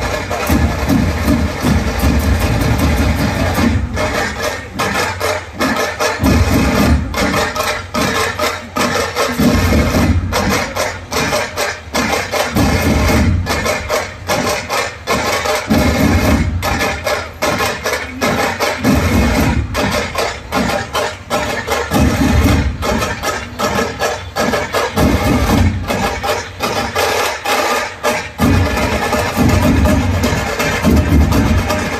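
Massed dhol drums played together in a fast, continuous beat. Loud deep drum strokes swell in waves every few seconds over a dense run of rapid sharper strokes.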